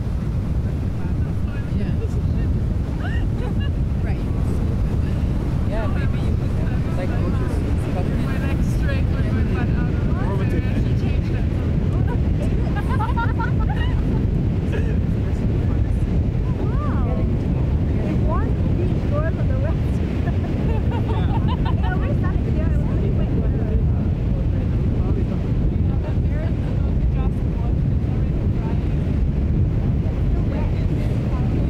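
Wind rumbling steadily on the microphone, with faint voices talking at times.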